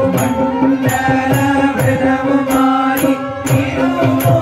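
Group of men singing a Hindu devotional song into microphones, accompanied by a keyboard holding a steady drone, a drum and small hand cymbals keeping a regular beat.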